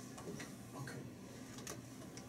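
Faint clicks of desk-phone buttons being pressed as a number is dialled, four or so spread over two seconds, the sharpest near the end.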